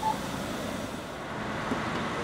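Steady engine and road rumble of a coach bus, heard from inside the passenger cabin.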